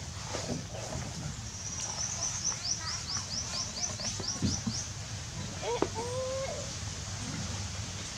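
A bird singing a quick run of about a dozen short, high, falling chirps, roughly four a second, over steady low background noise. Near the end a brief wavering call, lower in pitch, is heard once.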